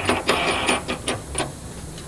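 A run of light metal clicks and scrapes, about half a dozen over a second and a half, as a bolt with a crush washer is fitted by hand into a steel suspension mount.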